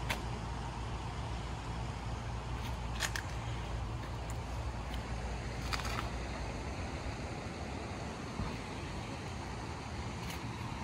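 Steady outdoor background noise with a low rumble and an even hiss, marked by two brief sharp sounds about three and six seconds in.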